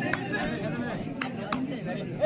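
Chatter of many overlapping voices from the spectators around a kabaddi court, with a few sharp clicks.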